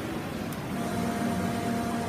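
Steady, echoing noise of an indoor swimming-pool hall during a race: a wash of splashing swimmers and spectator crowd noise, with a faint held tone from about a second in.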